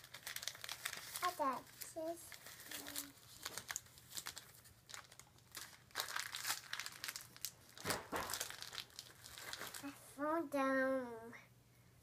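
Plastic candy wrappers crinkling in quick, irregular crackles as a toddler rummages through a wicker basket of wrapped sweets. A small child's voice makes a few short sounds early on and a longer high-pitched one near the end.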